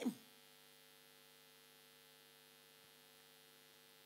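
Near silence with a faint, steady electrical mains hum made of several even tones. A voice trails off in the first moment.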